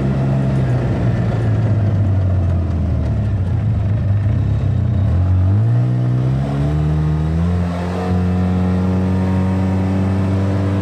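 Polaris RZR side-by-side's engine running, its pitch sinking as it slows for the first few seconds, then climbing as it accelerates away about five seconds in and levelling off at a steady speed near the end.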